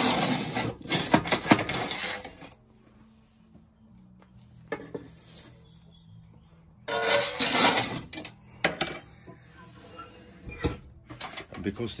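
Hot ash being tipped and scraped out of a stove's metal ash pan into a metal bucket: rattling metal scrapes and clatter in two loud spells with a quiet gap between, then a few sharp clinks.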